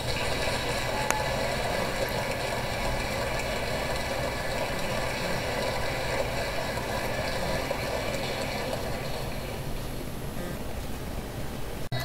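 Steady rushing noise over a low hum, breaking off in a brief dropout just before the end.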